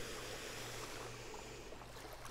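Small waves on a calm sea lapping at a sandy, stony shore: a faint, steady wash that eases slightly toward the end.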